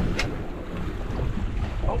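Wind buffeting the microphone over water slapping against a boat's hull at sea, as a steady low rumble, with one brief click shortly after the start.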